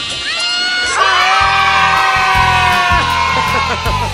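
A group of children shouting a long, held cheer that rises at the start and trails off near the end, over background music with a steady beat.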